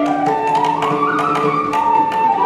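Carnatic ensemble in raga Dhenuka: a bamboo flute carries the melody, sliding up over the first second and easing back down, with a violin following and mridangam drum strokes keeping the rhythm.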